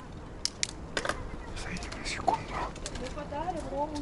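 Indistinct voices of people a little way off, with a few sharp clicks and taps in the first second. A wavering voice is clearest near the end.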